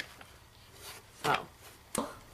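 Unboxing items being handled: a brief rustle about a second in and a sharp knock near the end.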